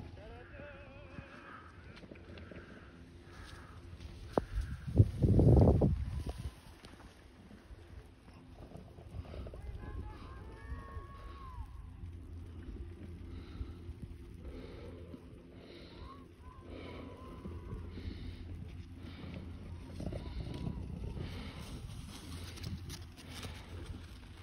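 Faint distant voices of people on a ski slope over a steady low rumble of wind on the microphone, with a much louder low rumble lasting about two seconds around five seconds in.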